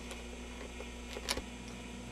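Handling noise from a hand-held camcorder being carried: a low steady hum with one sharp click a little past halfway.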